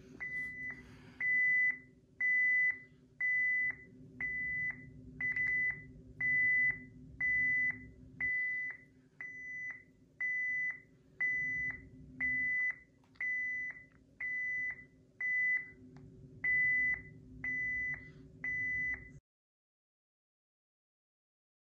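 Honeywell Lyric alarm control panel sounding its entry-delay warning: a regular series of short, high beeps, a little over one a second, while the armed panel waits for a code to disarm it. The beeping stops abruptly near the end.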